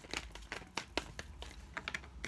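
Tarot cards being shuffled by hand: a quick, irregular run of light card clicks and slaps as the cards are riffled and dropped between the hands.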